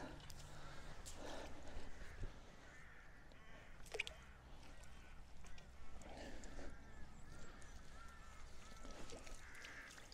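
Faint distant bird calls, scattered short calls that come most often in the second half, with one brief sharp sound about four seconds in.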